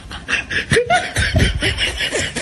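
People laughing: snickers and chuckles, starting about a quarter second in, a laugh track following the joke's punchline.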